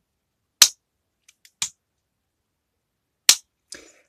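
Plastic miniature circuit breaker mechanism clicking as its toggle lever is worked: two sharp snaps about two and a half seconds apart, with a few lighter clicks between them.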